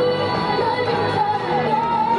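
Upbeat K-pop song with a female lead vocal and a steady bass line, played loud through a small portable busking amplifier.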